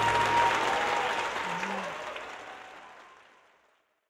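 Audience applauding, with a faint held tone in the first second or so; the applause fades steadily out over the last two seconds.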